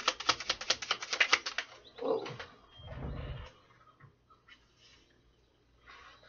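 A deck of tarot cards being shuffled by hand: a fast run of card-edge clicks for about the first second and a half, then a few softer handling sounds, then near quiet.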